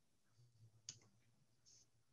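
Near silence: faint room hum, with a single faint click about a second in.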